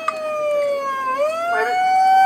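A siren wailing: one tone that falls in pitch for about a second, then rises again and holds steady.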